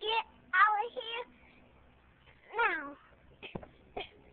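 Four high-pitched meow-like calls in the first three seconds, the last one longer and falling in pitch, then a few short clicks near the end.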